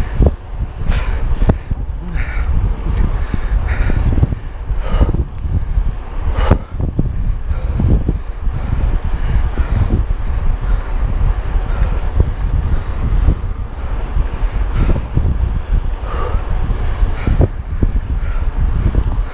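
Wind buffeting the microphone of a camera on a moving mountain bike, a constant low rumble, with a few sharp knocks in the first several seconds, typical of the bike and camera mount jolting over the path.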